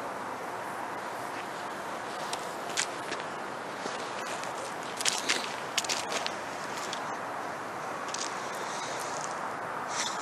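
Footsteps crunching on dry fallen leaves, with a few sharp crackles about five to six seconds in, over a steady background hiss.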